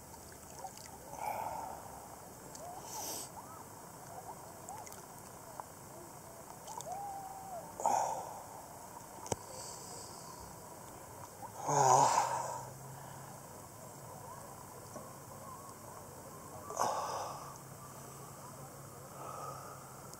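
A man's breaths and sighs as he floats with his head above the water, about six short ones spaced several seconds apart, the loudest about twelve seconds in.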